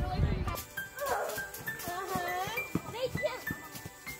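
A high, wavering voice over faint background music, after a loud noisy burst in the first half second.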